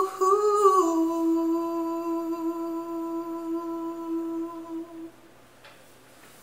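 A man's unaccompanied voice holds the song's final note as a long hum, stepping down slightly in pitch about a second in, then holding steady and fading out about five seconds in.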